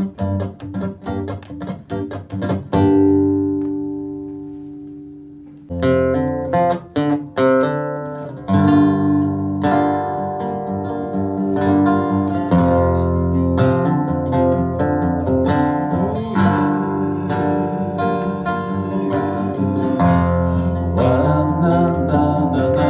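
Solo acoustic guitar playing an instrumental break in a song, picked notes and chords. About three seconds in, a chord is struck and left to ring and fade for about three seconds before the picking starts again.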